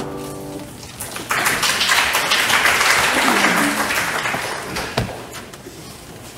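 The last chord of a choir-and-piano anthem dies away, then a few seconds of congregational applause that fades out about four and a half seconds in, followed by a single knock.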